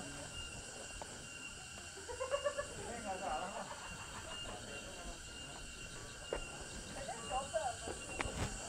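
Steady high-pitched insect chorus, with faint voices a couple of seconds in and again near the end.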